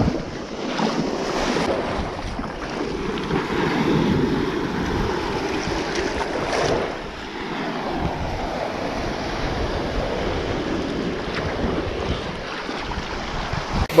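Small waves breaking and washing up and back over wet sand, swelling and easing in surges, with wind buffeting the microphone.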